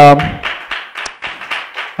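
A man's drawn-out 'um' at the start, then scattered, irregular hand claps, several a second and fainter than the voice.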